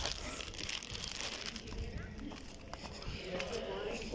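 Faint rustling and handling noise from a phone carried while walking, with a low voice starting near the end.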